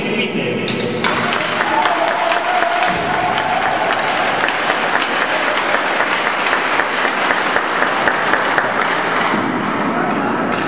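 Crowd applauding with many hand claps, starting about a second in.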